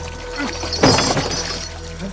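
A single sudden crash with a high metallic clatter a little under a second in, the sound of a heavy wooden chest coming down with gold pieces spilling, over dramatic background music holding a steady note.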